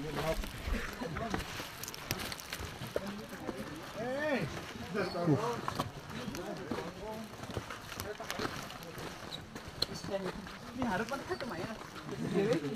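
Indistinct chatter of a crowd of hikers, with scattered short clicks and knocks of footsteps and gear on a rocky trail.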